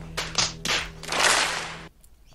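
Hands slapping foreheads in a mass face-palm: a few separate sharp slaps, then many merging into a dense, clapping-like patter that cuts off near the end. A faint steady low hum runs beneath.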